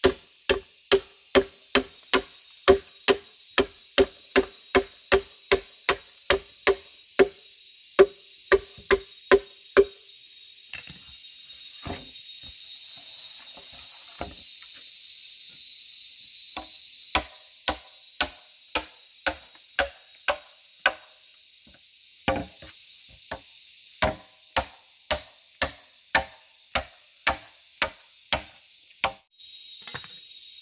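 Machete chopping into a hollow bamboo pole, about two blows a second, each with a short ringing note from the bamboo. The chopping breaks off for several seconds midway, with a few scattered knocks, then resumes at the same pace until near the end.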